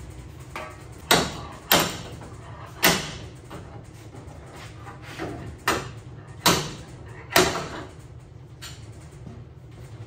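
A metal tool knocking on the early Ford Bronco's steel body at its damaged rear corner: about six sharp strikes at uneven spacing, each with a short ring, plus a few lighter knocks.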